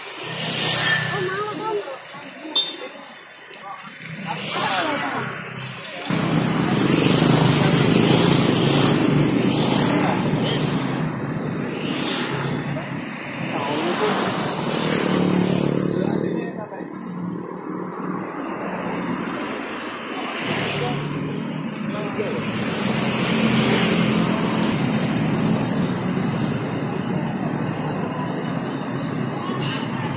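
Busy street ambience: indistinct chatter from people nearby over the steady noise of road traffic and motorbikes. A single sharp knock comes about two and a half seconds in.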